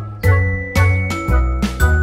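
Music: a bright, bell-like tune of struck, ringing notes over a steady bass beat, about two beats a second.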